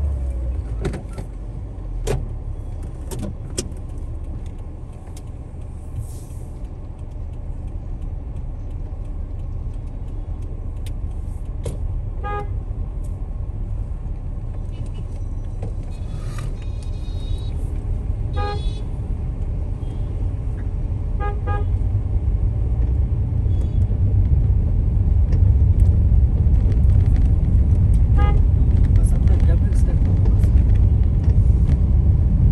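Low road and engine rumble heard from inside a moving car, growing louder over the last ten seconds or so as the car picks up speed. Short vehicle-horn toots sound several times.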